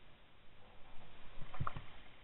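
Rustling and a few dull knocks close to a body-worn camera as the wearer moves over rough grass, with the knocks bunched together a little past halfway.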